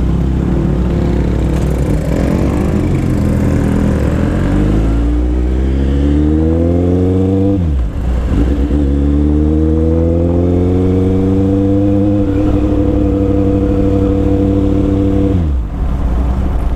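Kawasaki Z800's inline-four engine pulling away under throttle, its pitch rising for several seconds, dropping sharply at an upshift about eight seconds in, rising again and then holding steady before the throttle closes near the end.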